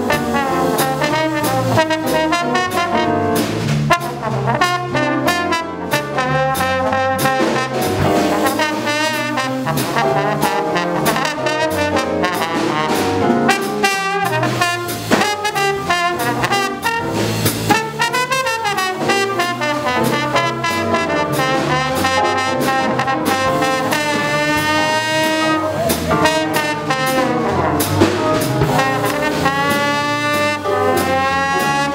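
Live small jazz band playing: a trombone carries the lead line over keyboard, electric guitar and drum kit, with a steady beat of cymbal and drum strokes throughout.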